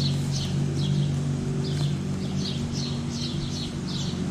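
A small bird chirping repeatedly, short high calls a few times a second, over a steady low hum.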